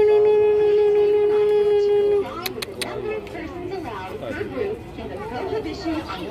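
A loud, steady horn-like tone at one unchanging pitch, cutting off abruptly about two seconds in, followed by people chattering.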